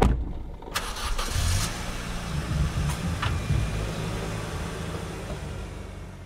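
A car engine starting and running with a steady low rumble, opening with a sharp thump and a short rush of noise about a second in.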